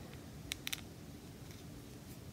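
A few small plastic clicks, about half a second in, as a shield accessory is pressed into an action figure's hand, over quiet room tone.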